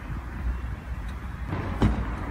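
Outdoor ambience from video footage being played back: a steady low rumble with hiss, and one brief louder sound near the end.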